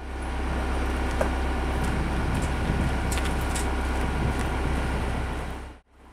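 Steady low rumble of an idling car engine, with a few faint clicks over it.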